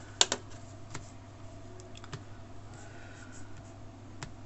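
A few sharp clicks on an HP Pavilion laptop's controls as the screen is switched between windows: a loud one just after the start, another about a second in, and fainter ones around two seconds.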